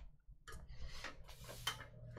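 Faint typing on a computer keyboard: a single click, then from about half a second in an irregular run of quick key clicks.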